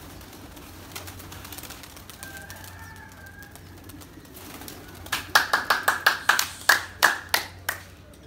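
A rapid run of about fourteen sharp claps, about five a second, starting a little past the middle and stopping just before the end.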